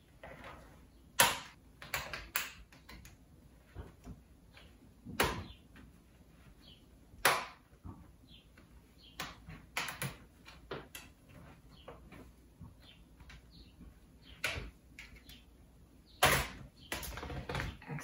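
Plastic bottom cover of a Dell G3 laptop being pried open with a plastic pry tool: a scattered series of sharp clicks and snaps as the cover's clips release, with a quicker run of knocks and clatter near the end.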